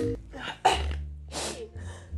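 Two short, sharp breaths from a woman, under a second apart, over a low steady hum.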